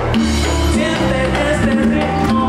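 A live band playing: acoustic guitar, electric bass and hand drums over a steady beat, with a singing voice.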